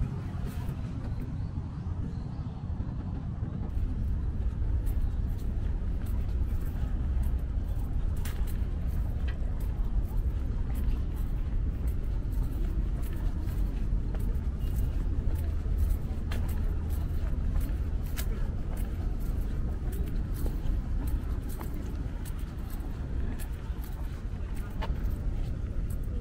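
Steady low outdoor rumble, of distant traffic or wind on the microphone, with a few faint scattered ticks.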